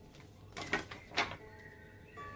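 Tarot cards being handled on a wooden table: two short sliding swishes, the first about half a second in and the second just after a second.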